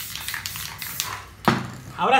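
Tools and materials handled against a spray-painted board: irregular light clicks and scratchy scraping, then one sharp knock about a second and a half in.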